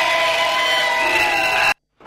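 A crowd of voices chanting in long, overlapping held notes, cut off abruptly just before the end.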